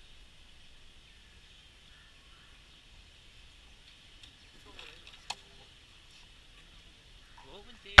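A cardboard box's flaps being pulled open, with a single sharp click about five seconds in, over a steady high background drone like insects chirring.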